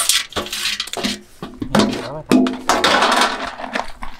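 Freshwater snail shells clicking and clattering against each other in a wet crate as hands scoop and sort through them, an irregular run of small hard clinks.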